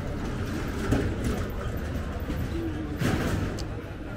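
Busy street ambience: passersby talking, with a small motor three-wheeler driving past close by and a brief louder noise about three seconds in.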